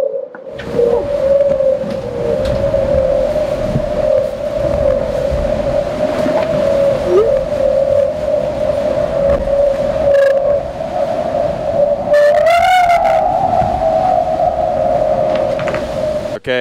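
Steady singing whine from the carbon hull of an IMOCA 60 racing yacht under way, wavering slightly in pitch and rising briefly near the end, over a low rumble of water rushing along the hull.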